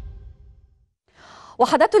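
A music sting fades out in the first half-second, then after a brief silence a woman newsreader takes an audible breath just before she starts speaking near the end.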